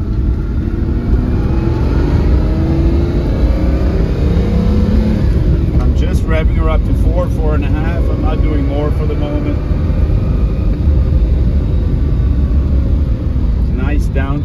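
Mid-mounted 5.2-litre V12 of a 1989 Lamborghini Countach 25th Anniversary heard from inside the cabin while driving, its note rising in pitch over the first few seconds as the car pulls away, then running on steadily with a deep low rumble.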